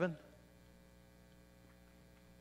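Faint, steady electrical mains hum with several thin steady tones, left after a man's voice breaks off right at the start.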